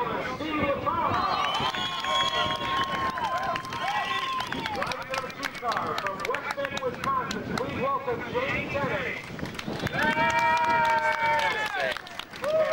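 Voices: the track announcer over the public-address system and people talking, with some long drawn-out notes.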